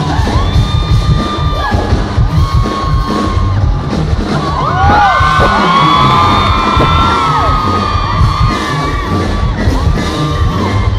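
Loud live R&B concert music with a heavy bass beat, filmed from the audience on a phone, with fans screaming and whooping over it, most strongly about halfway through.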